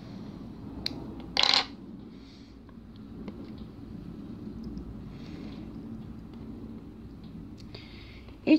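Quiet hand-handling sounds of needle-lace work with thread and small scissors: a light click about a second in, then a short, sharp rustle, over low steady background noise.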